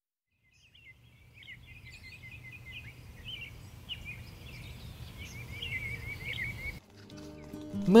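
A flock of small birds twittering overhead: a run of quick chirps and short trills, over a low steady rumble. Near the end the bird sound cuts off and music begins.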